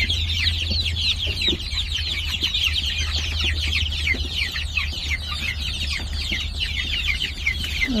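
A large flock of young chicks peeping continuously: a dense chorus of short, high, downward-sliding peeps, with a steady low hum underneath.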